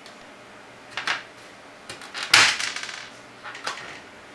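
Short hard-plastic clicks and scrapes from LEDs being pressed into a Lite Brite pegboard, with one louder rattling clatter about halfway through.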